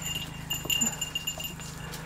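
Steady high-pitched insect song, typical of crickets, with faint rustling underneath.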